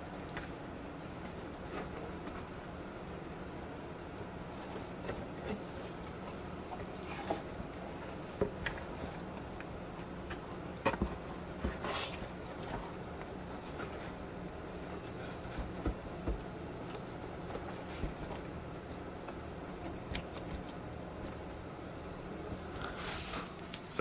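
Steady whir and hum of a running water-cooled GPU mining rig, its cooling fans and pumps, with scattered short clicks and scrapes of things being handled close by.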